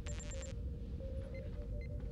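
Starship bridge console sounds: a quick run of about five high electronic beeps, then a steady low background hum with a faint held tone and a couple of soft pips.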